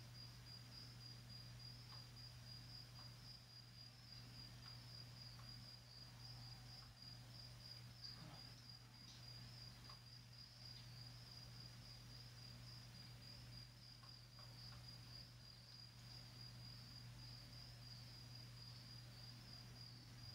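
Near silence: room tone with a faint steady high-pitched whine over a low hum, and a few faint scattered ticks.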